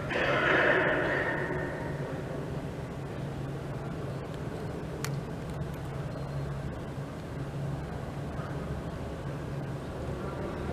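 Room tone of a large indoor hall: a steady low hum with a hiss that fades away over the first two seconds, and a single faint click about five seconds in.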